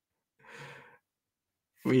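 A man's short, breathy sigh, about half a second long, then a word of speech begins near the end.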